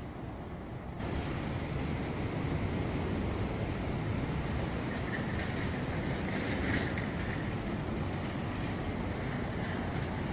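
Steady rumble of city street traffic, stepping up in loudness about a second in and swelling briefly a little past the middle.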